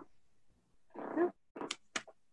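A short spoken "yeah" over a video-call connection, followed by two brief, sharp hissing clicks near the end.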